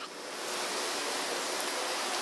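A steady, even hiss, mostly high-pitched, swelling in over the first half second and then holding level.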